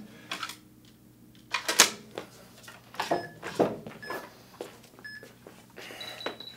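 Metal clicks and clanks of PowerBlock adjustable dumbbells being reset to a lighter weight on their stand and lifted off. Three short electronic timer beeps, a second apart, count down in the second half.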